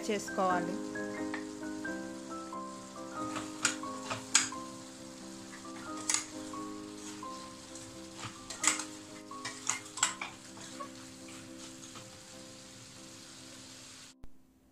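Chicken pieces frying and sizzling in a stainless steel pan as masala powder is stirred in, with a spatula scraping and knocking against the pan several times. Soft background music with long held notes plays underneath.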